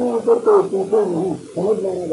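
Only speech: a man lecturing in Urdu, talking without a break apart from a brief pause about one and a half seconds in.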